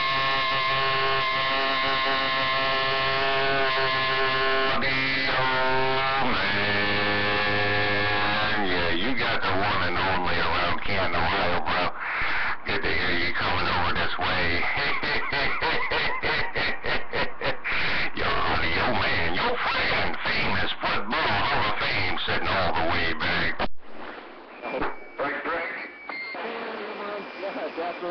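Citizens band radio receiving AM on channel 28, crowded with stations transmitting over each other: held pitched tones that bend in pitch after about six seconds, then a jumble of garbled overlapping voices. The channel drops away suddenly about 24 s in, leaving weaker, broken signals.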